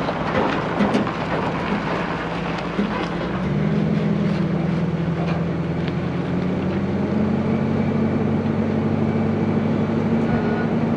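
Truck engine pulling a loaded trailer, with tyre and trailer noise over gravel and pavement; about three and a half seconds in the engine note rises and then holds steady as the rig gathers speed.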